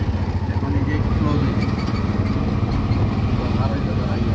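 Small engine of a three-wheeled CNG auto-rickshaw running steadily, heard from inside its cab.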